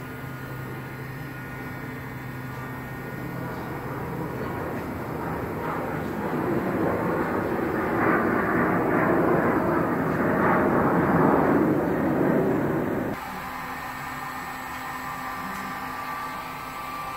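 Heat gun blowing hot air onto a plastic bumper cover to soften the plastic for dent repair. The rushing grows louder, then stops abruptly when the gun is switched off about thirteen seconds in.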